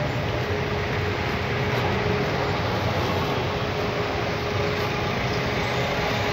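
Steady street noise from a police foot march and its convoy, with vehicle engines running slowly and a faint constant hum through it.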